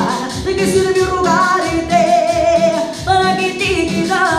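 A young male voice sings a Spanish-language romantic ballad over a backing track with a steady beat, holding one long note with vibrato in the middle.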